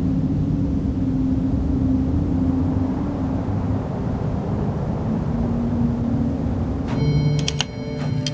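A steady low rumble with a faint held hum. About seven seconds in, a sustained chord of steady tones comes in.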